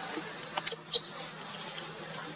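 A few sharp clicks and a brief high squeak about a second in, from a newborn macaque clinging to its mother.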